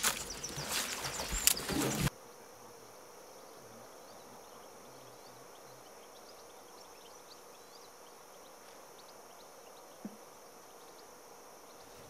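Close rustling and crackling with sharp clicks, like produce being handled, cut off abruptly about two seconds in. Then faint, steady outdoor garden ambience with small high chirps.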